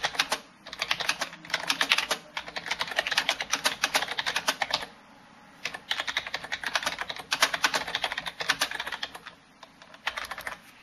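Fast typing on an external computer keyboard: quick runs of keystroke clicks broken by brief pauses, with a longer pause about five seconds in.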